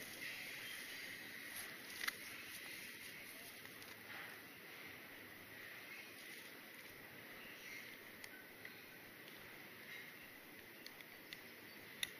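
Faint rustling of dry grass and a backpacking pack being handled, with a few light clicks.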